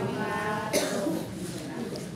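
A man coughs once into a handheld microphone, a sudden burst about three quarters of a second in, right after some speech.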